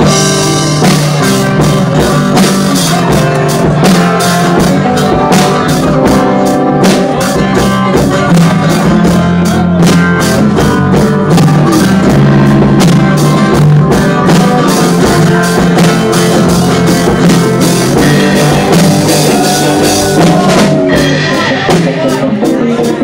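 Live band playing rock music loudly: drum kit with cymbals driving a steady beat under electric bass and acoustic guitars.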